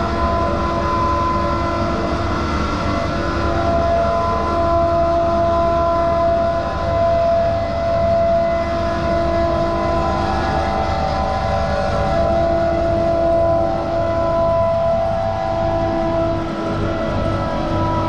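Kuba TK03 motorcycle's small air-cooled single-cylinder engine, upgraded from 50 cc to 200 cc, running steadily at idle with a steady whine over it.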